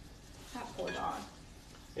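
Kitchen cooking sounds, faint and steady, with a short indistinct voice about half a second in.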